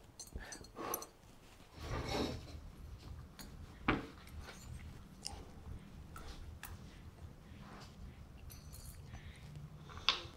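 Faint scattered clicks and light knocks of small metal parts being handled as valve springs and retainers are fitted onto a Hemi 212 Predator cylinder head, with one sharper click about four seconds in.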